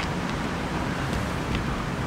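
Steady outdoor background noise: a low rumble with a hiss above it, and no distinct event standing out.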